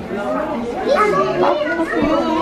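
Several voices talking and chattering over one another indistinctly in a room.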